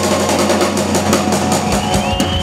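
Live rock band playing loudly, electric guitars over a drum kit, with repeated cymbal and drum hits.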